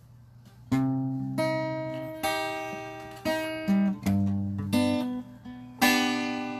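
Acoustic guitar played slowly: after a brief pause, about eight separate plucked notes and chords, each left to ring and fade before the next.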